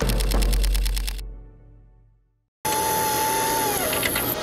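A sound-effect camera shutter firing in a rapid burst, about ten clicks a second, that stops about a second in while the intro music's low end fades away. After a brief gap, a steady electronic whine starts abruptly, and its pitch dips near the end.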